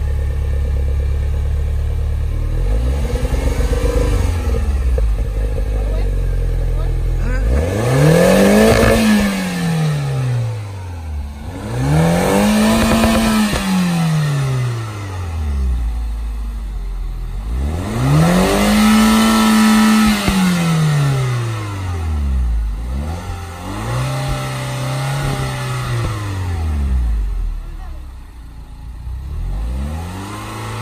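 A 2009 Mini Cooper S R56's turbocharged 1.6-litre four-cylinder idles steadily, then is revved five times, each rev climbing and falling back to idle, the third held longest at the top. The engine is being revved to burn off a Seafoam intake-valve cleaning treatment after its soak.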